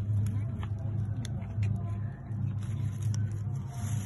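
A steady low rumble with scattered small clicks and rustles as lettuce leaves are handled and picked.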